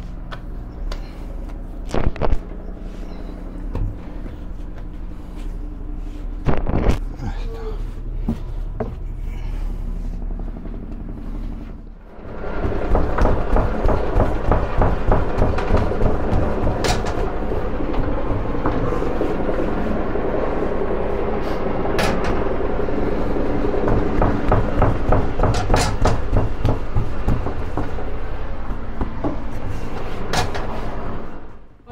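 A steady low hum with a few sharp thuds as soft dough is thrown down onto a floured wooden table. About twelve seconds in, loud music comes in and carries on.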